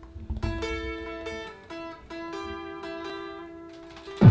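A guitar picking a short, quiet melody of single notes, each note ringing on into the next.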